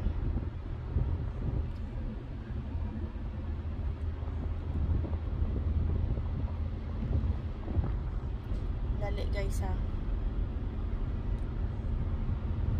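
Steady low rumble of a car driving, heard from inside the cabin, with a brief snatch of voice about nine seconds in.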